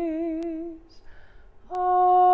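A woman singing a benediction unaccompanied: a long held note with vibrato fades out before a second in, a short pause, then a new steady held note begins near the end.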